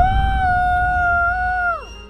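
A woman's long, high-pitched scream held on one pitch, sliding down and dying away near the end, over a low rumble.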